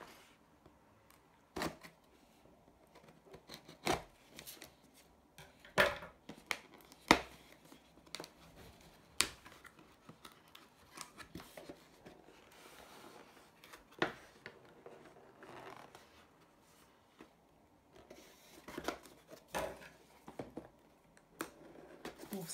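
A plastic-wrapped cardboard box being handled and turned over on a table, with scattered sharp clicks and knocks and soft plastic rustling between them. Near the end, scissors cut into the box's shrink wrap.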